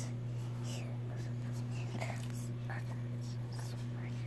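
Faint scratching of a marker drawing on a cotton t-shirt, a few soft strokes scattered through, over a steady low hum.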